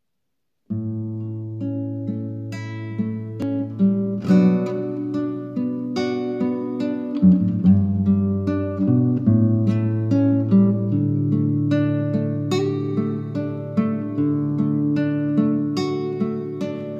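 Acoustic guitar playing an instrumental introduction, plucked notes over steady held low notes, starting about a second in.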